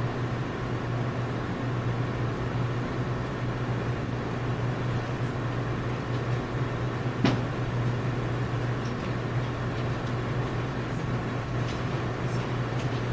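Room tone: a steady low hum with one sharp knock about seven seconds in.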